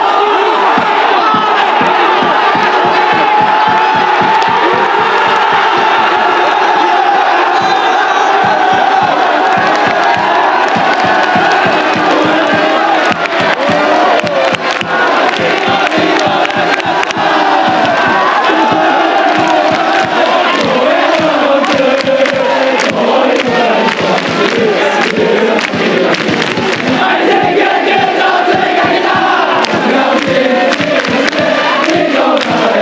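Japanese baseball cheering section, a large crowd of fans chanting and singing a cheer song together in unison over a steady beat, celebrating a home run.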